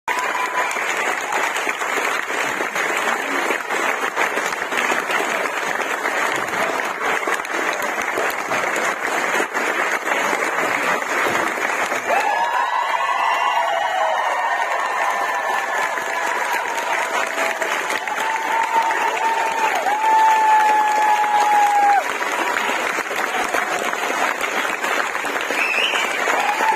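Audience applauding in a hall. About halfway through the clapping thins and voices come through, with long held calls that are the loudest part. The applause builds again near the end.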